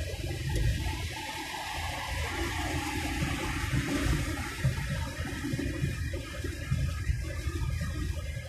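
Road and tyre noise inside a car cruising on a motorway: a steady low rumble with a rushing hiss that swells for a few seconds in the middle.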